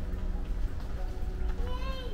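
A steady low rumble, and near the end a high-pitched voice starting a drawn-out call that bends upward.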